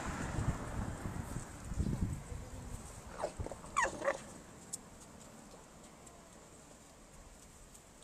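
Alpaca giving two short whining calls that rise and fall in pitch, about three seconds in, after a few seconds of low wind rumble on the microphone.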